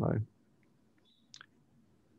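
A man's spoken word trails off, followed by near silence, a faint short beep-like tone and a single brief click about one and a half seconds in.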